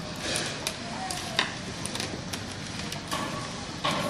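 Scattered small clicks and scrapes of handling, with a sharp click about a second and a half in and a louder one near the end, over a low steady hum.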